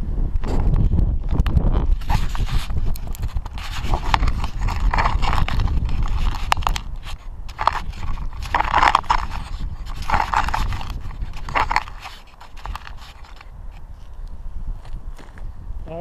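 Wind buffeting the microphone, with scraping and knocking as the camera is handled and set down on stony gravel ground; the wind rumble drops off near the end.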